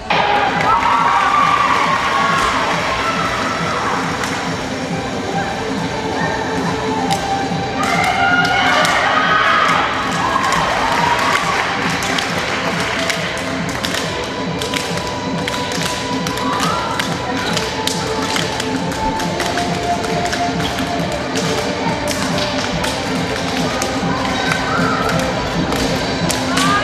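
Sports-hall din of girls' handball teams shouting and cheering in their pre-game huddles. Scattered thumps and taps of balls and feet on the court floor, with music playing underneath.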